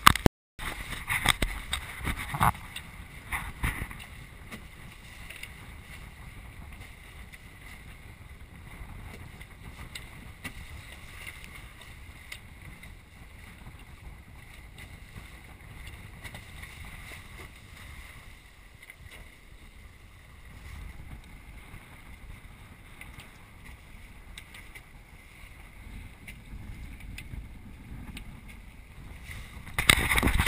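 Sailing trimaran moving under sail: steady rush of water along the hulls with wind noise. There are a few sharp knocks in the first few seconds, and the sound cuts out briefly just after the start.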